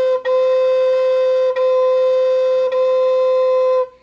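High Spirits Sparrow Hawk Native American flute in A, aromatic cedar, playing slow repeated notes on one pitch. A note is already sounding, then three more follow, each about a second long and separated by a short break.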